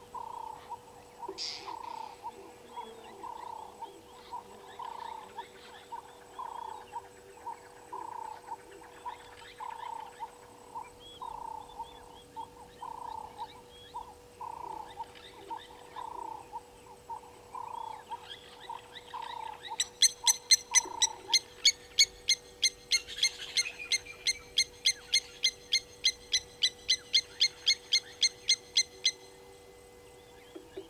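Wild animal calls. A low hooting note repeats about every three-quarters of a second for roughly the first twenty seconds. Then a loud, rapid series of calls, about three a second, runs for most of the last ten seconds, over a faint steady hum.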